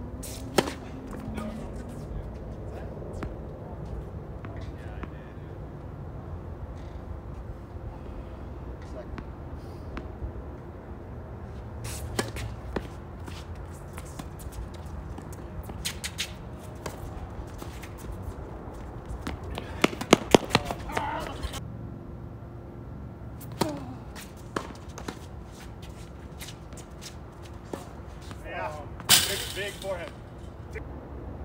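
Tennis balls struck by racquets during a doubles point on a hard court: a serve about half a second in, then sharp pops of shots spread through the rally, with a quick run of knocks about two-thirds of the way through and a louder burst near the end.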